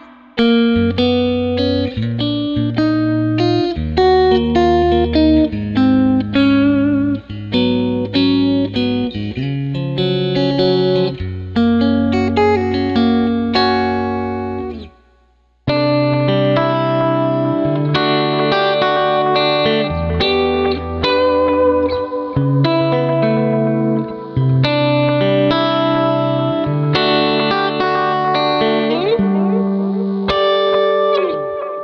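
Amplified guitar recorded through a large-diaphragm condenser mic: one picked passage of notes over low bass notes fades out about halfway, then after a short break an orange Gretsch hollow-body electric guitar plays a new passage of picked notes and chords.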